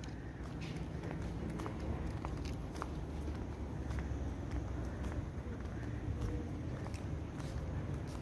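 Footsteps on paving as the person filming walks, with faint scattered ticks over a steady low rumble.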